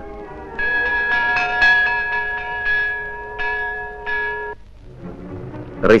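Bells struck in a quick run of about ten notes, their tones ringing on together, then stopping suddenly about four and a half seconds in.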